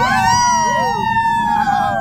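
Several people whooping together in long, drawn-out cries that rise and fall in pitch, overlapping one another, and fading out near the end.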